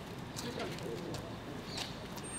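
Faint outdoor background with a bird cooing softly and a few faint high chirps or clicks.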